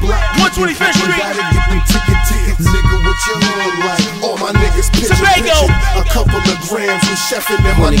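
Hip-hop track playing: rapped vocals over a beat with deep bass notes that come in and drop out.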